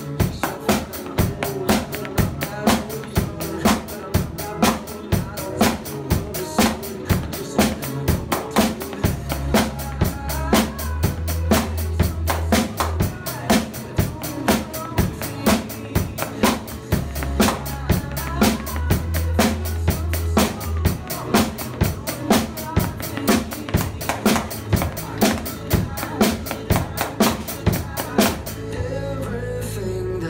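A Dixon drum kit played in a steady rock beat of kick, snare and cymbals along to a recorded pop song's backing track. The drumming drops out near the end, leaving the song playing.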